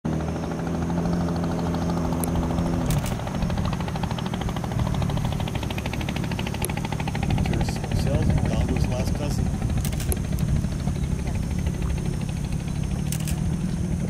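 Boat motor running steadily with a rapid pulsing, its steady hum turning rougher about three seconds in.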